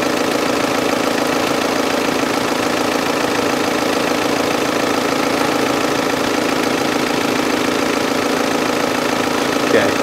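The Passat's 2.0 TDI four-cylinder turbo diesel idling with a steady, even hum.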